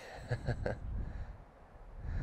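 Wind buffeting the microphone: an uneven low rumble, with a few faint ticks about half a second in.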